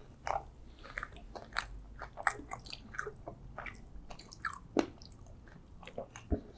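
Close-miked chewing and biting of soft, frosted rainbow pastries: sticky mouth sounds with many small irregular crackles and smacks, and one sharper click a little before the end.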